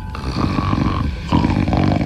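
A man snoring: two long, rough snores, the second starting a little past halfway through.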